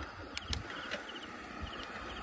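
Faint insect chirping: short high pulsed chirps repeating in small groups, with two light clicks about half a second in.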